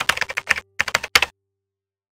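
Keyboard typing sound effect: rapid key clicks in three quick runs over about a second and a half, then stopping.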